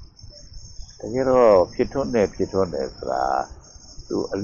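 A man's voice speaking in Burmese, starting about a second in and pausing near the end, over a steady high-pitched whine.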